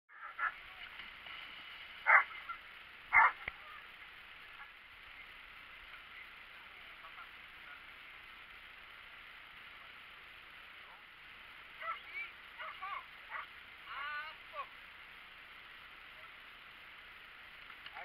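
Waterfowl honking: three loud, short honks in the first few seconds, then a quick run of shorter honks about twelve to fifteen seconds in, over a steady hiss.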